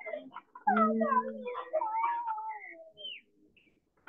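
Drawn-out animal calls: several pitched tones, one gliding downward, lasting about two and a half seconds and stopping about three seconds in.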